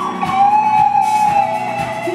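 A live band playing a song: electric guitar and keyboard, with a long held melody note that bends slightly in pitch.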